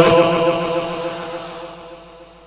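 A man's voice holding one drawn-out chanted note at the end of a phrase, fading away over about two seconds.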